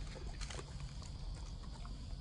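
A dog chewing a watermelon rind: a few scattered wet crunches and clicks.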